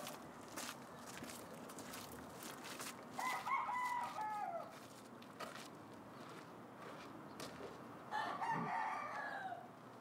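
A rooster crowing twice, about three seconds in and again near the end, each crow falling in pitch as it ends, over a low background with scattered sharp clicks.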